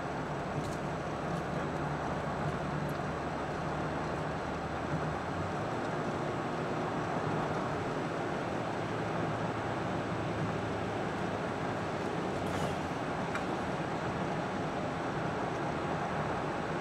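Steady road and engine noise of a car driving on a paved highway, heard inside the cabin. The low rumble drops a little about five seconds in.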